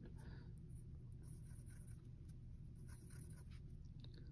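Faint scratching of a wooden pencil drawing short strokes on a paper worksheet, over a low steady room hum.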